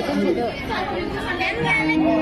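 Spoken dialogue between stage actors over microphones, with a sustained background music note coming back in near the end.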